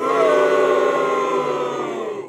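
An edited-in sound effect: a loud held chord of several tones, lasting about two seconds, sagging slightly in pitch. It starts abruptly and then drops away.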